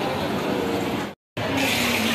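Busy indoor mall ambience, a steady wash of crowd noise with indistinct voices. It cuts to silence for a moment just after a second in, then resumes with more hiss.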